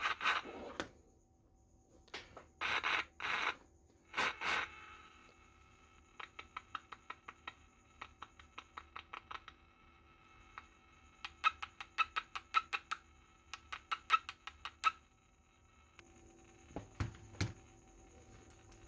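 Breath puffs and quick taps on the electret microphone of a home-built two-transistor FM transmitter, heard back through a pocket FM radio's speaker over a faint steady whine. There are two short puffs, then two runs of rapid taps, each tap ringing briefly.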